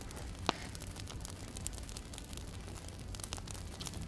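Faint crackling and hiss of a burning 5S 5000 mAh lithium-polymer battery pack, with small scattered clicks and one sharper crack about half a second in.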